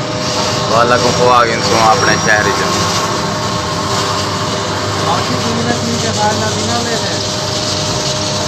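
Petrol station fuel dispenser running as it pumps fuel into a vehicle: a steady mechanical hum with a constant whine, under men's voices in the first couple of seconds.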